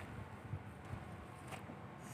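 Faint, steady outdoor background noise with a couple of soft clicks, one about half a second in and one about a second and a half in.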